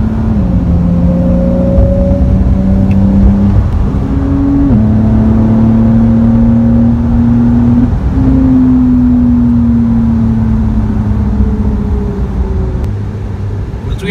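Porsche 911 (992) twin-turbo flat-six engine and exhaust heard from inside the cabin on track, its note climbing and falling with several sudden pitch steps as gears change.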